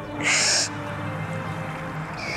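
Sustained background film-score music with low held notes. A short hiss of noise lasting about half a second comes a fraction of a second in and is the loudest sound.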